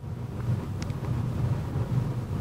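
Steady low rumble of background room noise in a lecture room, with a faint click about a second in.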